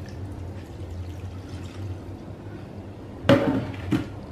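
Water poured from a plastic measuring jug into a stainless steel saucepan of grated beetroot, a steady pour. About three seconds in, a brief loud clatter.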